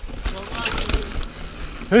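Niner Jet 9 RDO mountain bike rolling along a dirt singletrack: tyre noise, light rattles and a low wind rumble on the camera mic. A man's voice starts near the end.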